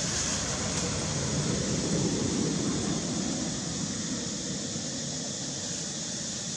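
Steady background noise: an even low rumble with a hiss above it, and no distinct calls, knocks or voices.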